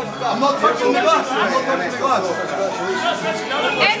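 Several people talking over one another: loud, indistinct group chatter.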